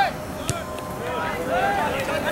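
A soccer ball kicked once, a sharp short thud about half a second in, with players' voices shouting across the field.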